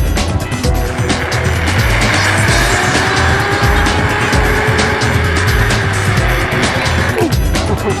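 Zipline trolley's pulleys running along the steel cable: a hissing whine that sets in about a second in, rises slightly in pitch and then eases, and stops shortly before the end as the rider reaches the platform. Background music with a steady beat plays under it.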